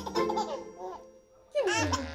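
A baby laughing and squealing in short bursts as an adult voices playful sounds at it, with background music underneath; the laughter drops away briefly midway, then a loud burst comes near the end.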